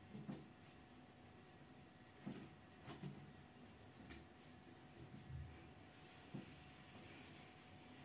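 Near silence with a handful of faint, short taps and rustles from hands packing cut lemon pieces into a bag made from a disposable face mask.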